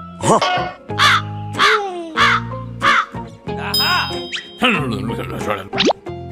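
Cartoon character's voice making short, repeated, pitch-bending vocal sounds about every half second or so, over steady background music.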